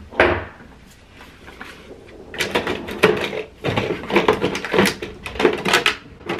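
A wooden bathroom drawer sliding open just after the start. From about two seconds in, a quick run of clicks and clatters follows as plastic makeup items are set into clear plastic drawer organizers.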